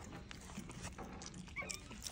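Spider monkeys eating a soft mashed blueberry-and-oat mix off a spoon: faint wet mouth clicks and smacking, with a brief high squeak near the end.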